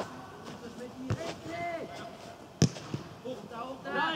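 A football kicked twice on a grass pitch: a sharp thud about a second in and a louder one near the three-second mark, with distant shouts from players between.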